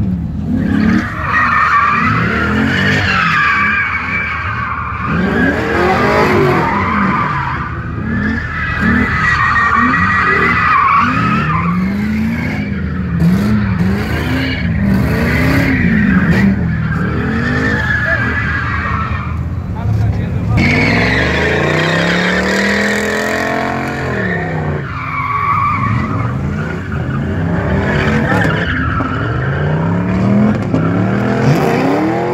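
Ford Mustang spinning donuts: the tyres squeal in a long, wavering screech while the engine revs up and down about once a second. Around two-thirds of the way through comes one long rising rev.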